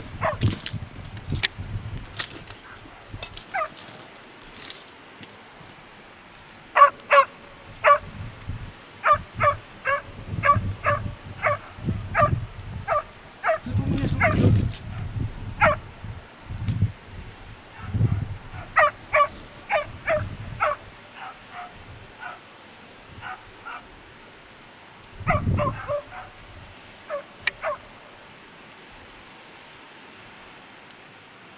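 Hunting dog barking in short volleys of several barks with pauses between them, baying a wild sheep it is holding at bay on the rocks. Low, dull knocks and rustles sound close by in between.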